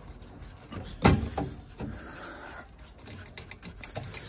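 Handling noise from a gloved hand working among the wiring inside a furnace cabinet: one sharp knock about a second in, then a run of small faint clicks and rustles.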